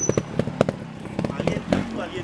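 Irregular knocks and crunches of footsteps and camera handling as the operator moves over rough ground, over the low running of a trial motorcycle engine.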